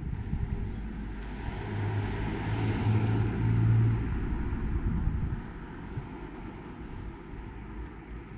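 A motor vehicle passes close by on the road. Its engine hum and tyre noise build from about a second in, peak around three to four seconds, and fade away after about five seconds.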